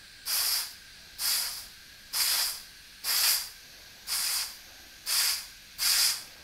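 Seven short hisses of air, about one a second, as pressure is pumped into the control port of a VW switchable coolant pump to push its impeller shield closed.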